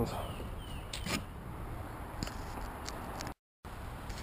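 Quiet outdoor background with a low rumble of wind on the microphone and a few faint clicks of hands handling the foam airframe; the audio breaks off for a moment near the end.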